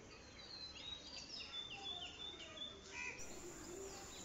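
Faint bird chirps: a run of short, repeated high chirps over low background noise, dying away about three seconds in.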